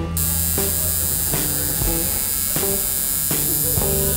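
Coil tattoo machine switched on just after the start and buzzing steadily. Background music with a steady beat plays underneath.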